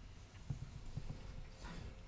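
Quiet room tone with a few soft, irregular low knocks, one a little stronger about half a second in.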